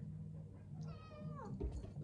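A cat meowing once, a single call of under a second that falls in pitch, followed by a low thump.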